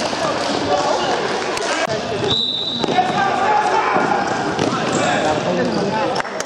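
Basketball game in a sports hall: a ball bouncing on the court and players and spectators calling out, echoing in the hall. A brief, steady, high whistle sounds about two and a half seconds in.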